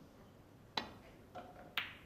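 Snooker shot: a sharp click as the cue tip strikes the cue ball, then about a second later a second click as the cue ball hits a red.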